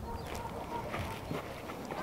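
Frozen pond ice crackling: a few faint, scattered sharp clicks.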